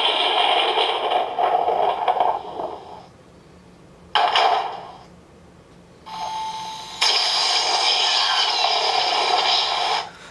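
Sound effects played through the small built-in speaker of a battery-powered 'Try Me' toy display box, in separate bursts: one fading out after about three seconds, a short one about four seconds in, and a loud one from about seven seconds on, with a brief steady tone just before it.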